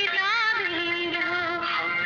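1960s Hindi film song recording: music with a long held note, wavering with heavy vibrato, that steps down to a lower pitch about half a second in. The sound is thin and cuts off in the treble, as on an old transfer.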